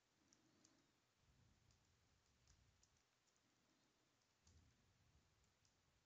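Near silence with faint, scattered computer keyboard keystrokes as code is typed.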